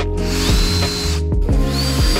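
Bosch cordless drill-driver driving screws through a steel corner bracket into a wooden picture frame. It whirs up to speed twice, each time with a rising whine that then holds steady. Background music with a steady beat runs underneath.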